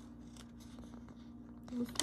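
Faint rustling of a glossy catalogue page handled and shifted under fingers, over a steady low hum.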